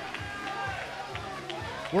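Gym ambience in a gap in the commentary: background music with a steady low beat, about three beats a second, under faint crowd voices.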